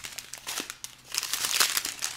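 Strips of clear plastic bags of diamond-painting resin drills crinkling as they are handled, growing louder about halfway through.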